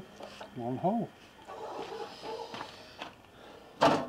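A short wordless vocal sound about a second in, faint handling noise, then just before the end a sudden loud clatter as the sheet-metal panel cut from the van's side is handled and set down.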